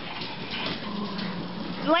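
A pack of small dogs rummaging at a cardboard box of toys: rustling of cardboard and plush toys with light clicks and scrabbling of claws on a wooden floor, and a faint low drawn-out sound in the second half.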